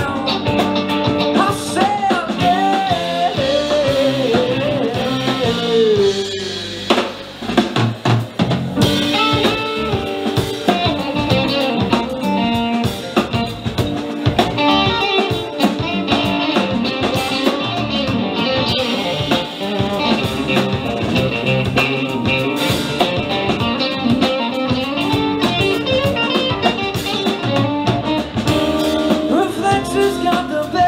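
Live rock band playing an instrumental passage: electric guitars, bass and keyboards over a drum kit. A lead line glides and falls in pitch over the first few seconds, and there is a short break about seven seconds in before the full band carries on.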